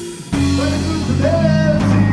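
Rock band rehearsing live, with electric guitar, electric bass and drum kit. The band stops for a moment just at the start and comes back in together about a third of a second in, then plays on loudly.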